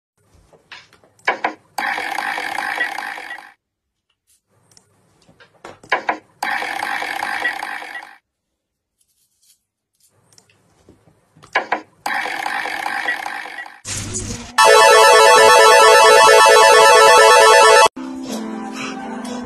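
Slot-machine sound effects: three times over, a few clicks and then a short spin sound of a second or two. Near the end a loud jackpot jingle with a fast repeating warble plays for about three seconds.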